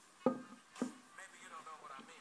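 Two short thumps about half a second apart, over faint background music.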